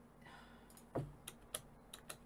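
Computer keyboard keys clicking a few times, sparse and irregular, with a soft breath early on and a brief low vocal sound about halfway through.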